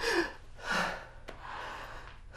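Two breathy exhalations, like soft sighs or gasps with a little voice in them, about three-quarters of a second apart. A faint click follows.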